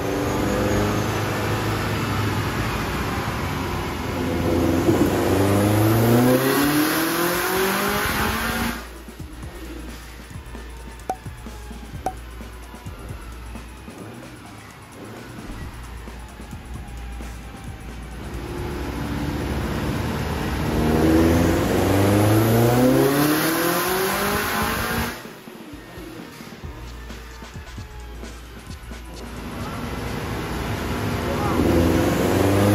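Turbocharged Subaru EJ20-based 2.1-litre stroker flat-four making two full-throttle pulls on a chassis dyno, its note climbing steadily in pitch through each run. Each pull cuts off suddenly, about 9 s in and about 25 s in, and the engine winds down before the next one builds.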